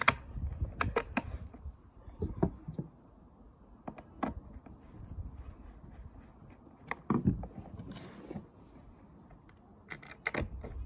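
Scattered clicks and knocks of a battery tray and screws being handled against the plastic housing of a backpack sprayer, with a screwdriver being brought to the screws. The loudest knocks come at the very start and about seven seconds in.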